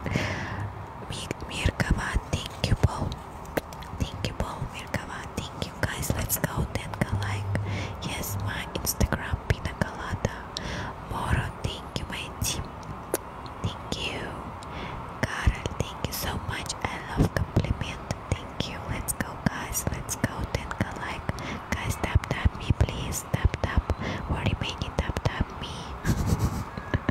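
ASMR whispering close to a microphone, with many short, sharp mouth clicks and lip smacks throughout.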